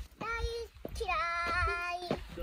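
A five-year-old girl singing a made-up tune: a short held note, then a longer, higher note that wavers slightly as she holds it.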